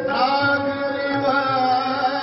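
Sikh kirtan in a raag: a man singing a long, sliding melodic line over a harmonium drone, with tabla accompanying.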